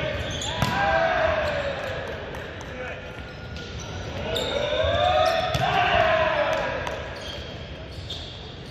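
A volleyball struck several times, giving sharp smacks, with players' drawn-out shouts rising and falling twice, echoing in a gymnasium.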